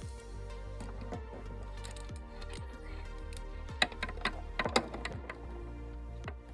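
Background music with small plastic clicks and taps of toy pieces being handled and set in place, a cluster of sharper clicks about four to five seconds in.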